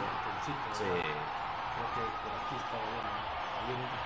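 A man's voice talking over a steady crowd-like noise, as from the soundtrack of an old televised football match. A brief, thin, steady high tone sounds about two seconds in.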